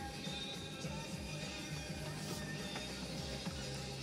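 Music playing on the vehicle's stereo, heard inside the cabin at a moderate, steady level.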